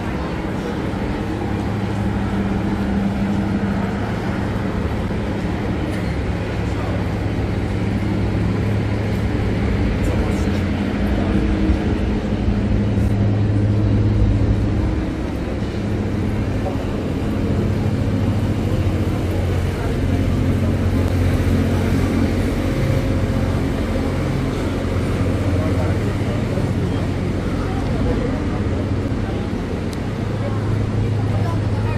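Busy city street ambience: passers-by talking over a steady low hum of traffic.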